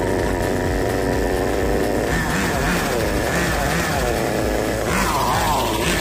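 Small nitro glow engine of a 1/10 RC buggy running at speed, revving up and down repeatedly as the throttle is blipped on the transmitter.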